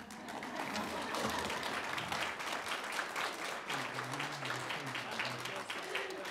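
Audience applauding: many hands clapping steadily, with a voice faintly heard under the clapping about two-thirds of the way through.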